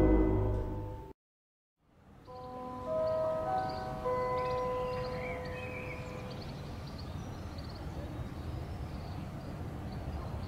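Intro music fades out, then a short silence. A fire station alarm gong follows: several bell-like tones struck one after another, each ringing on and slowly dying away. It is the alarm signal that calls the crew out.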